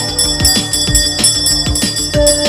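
Brass puja hand bell (ghanta) rung continuously during an aarti, its ringing steady and bright, over devotional music with a melody and regular drum beats.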